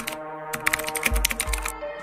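Rapid keyboard-typing clicks, a sound effect for dialling a call on a handheld device, over steady background music. The clicks begin about half a second in and stop shortly before the end.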